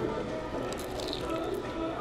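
A bite into crisp spicy fried chicken dipped in gravy, with a faint crunch about a second in and chewing after, over quiet background music.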